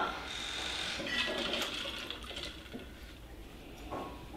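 A wine bottle drawn out of an ice bucket: ice and water rattling and sloshing, fading away over the first two seconds or so.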